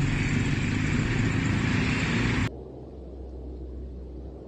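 Busy street traffic, with vehicle engines running in a steady drone. About two and a half seconds in it cuts off abruptly, leaving a much quieter low rumble.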